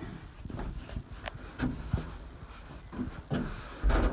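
Rustling and light knocks as padded saddle pads are handled and laid onto a trailer's saddle rack, with a dull bump near the end.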